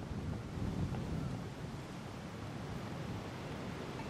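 Steady outdoor ambience on a golf green: a low rumble of wind on the microphone, with no distinct putter strike standing out.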